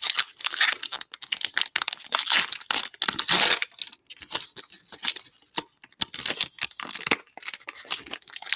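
Trading-card pack wrapper being torn open and crinkled by hand: a run of crackling tears, loudest from about two to three and a half seconds in.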